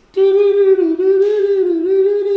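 A man's voice holding one long, high, wavering "oooo" note, crooned as mock spooky conspiracy music.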